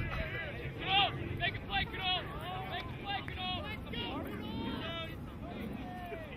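Several voices of players and spectators shouting short calls, unintelligible and overlapping, loudest about a second in, over a low wind rumble on the microphone.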